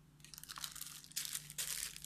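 A clear plastic bag crinkling as it is picked up and handled, with irregular rustles that start softly and grow louder about a second in.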